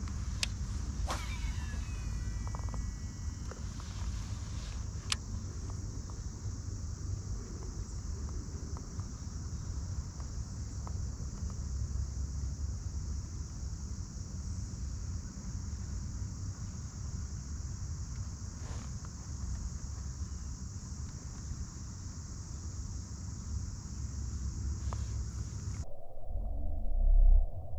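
Summer outdoor ambience: a steady high-pitched drone of insects over a low rumble, with a few sharp clicks in the first few seconds.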